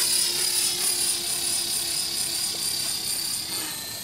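Electric Belt CP radio-control helicopter in flight: a steady high-pitched whine of its motor and rotors over a lower hum, fading as it flies away.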